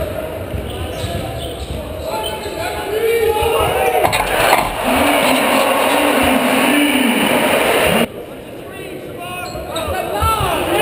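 Basketball game sound from courtside: sneakers squeaking on the hardwood and a ball bouncing, then a crowd cheering loudly from about four seconds in. The sound cuts off abruptly about eight seconds in, then the squeaks return.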